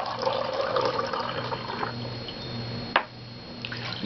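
Water being poured from one drinking glass into another, splashing for about two seconds, then tapering off, with a single sharp click about three seconds in.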